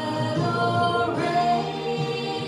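A woman singing a slow worship song into a handheld microphone, holding long notes.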